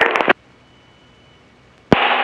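Aircraft VHF radio audio in a headset feed: a transmission with clicks ends abruptly about a third of a second in, leaving only faint hiss, then a sharp click near the end as the next transmission keys up with static.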